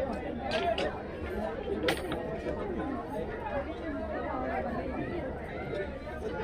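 Indistinct chatter of people talking nearby, with no clear words, and a few sharp clicks in the first two seconds.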